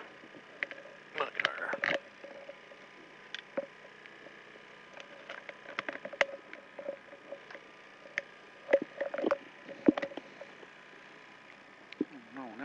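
Scattered clicks and rustling of helmets and harness gear being handled inside a rally car's cabin, over a steady low hum, with a few short louder bursts about a second in and again near the end.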